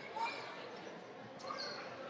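Faint indoor sports-hall sound of a handball match in play: distant players' voices and a ball bouncing on the court floor.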